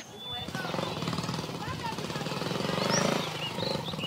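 A donkey braying: one long, rough, pulsing call that builds to its loudest about three seconds in. Small birds chirp over it.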